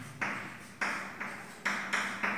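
Chalk writing on a blackboard: about five sharp taps and short strokes as letters are formed, each fading quickly with a brief room echo.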